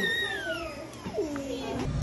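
A young child's high-pitched vocal squeal that slides steadily down in pitch over about a second, followed by a second, lower call that also falls.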